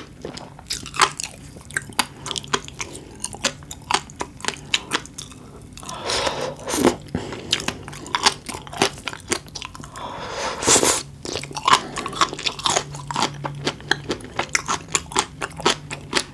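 Close-miked eating of raw seafood: steady wet chewing clicks, with two longer slurps about six and ten seconds in as a raw oyster is taken from its half shell.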